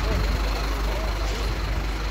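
A large vehicle's engine idling with a steady low rumble, with indistinct voices of people around it.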